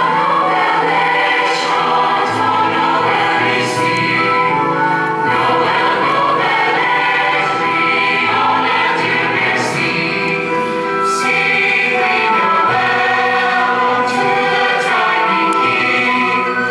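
A high-school jazz choir of young female voices singing together in held, multi-part harmony.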